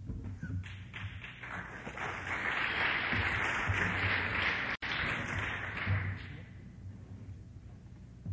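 Audience applause in a hall, swelling about a second in and dying away by about six seconds, with a brief dropout in the recording just before five seconds.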